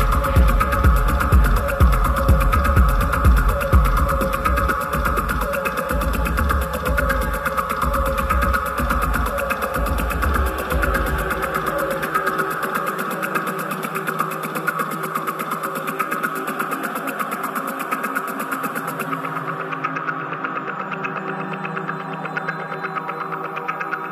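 Deep hypnotic techno from a DJ mix. A pounding kick drum and bass run under sustained synth pads, then drop out about halfway through, leaving the droning pads alone. Near the end the high hiss fades away too.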